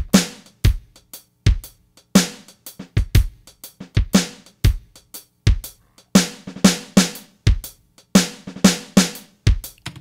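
Shuffle drum groove from a MIDI clip played on a General MIDI synth drum kit at 120 BPM: kick, snare, rimshot and hi-hat in a swung rhythm. About six seconds in it switches to a drum fill with hits closer together.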